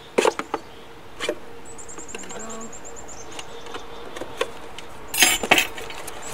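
Knife point stabbing drainage holes through the bottom of a plastic milk jug: sharp plastic pops in a quick cluster at the start, one more about a second in, and another cluster near the end.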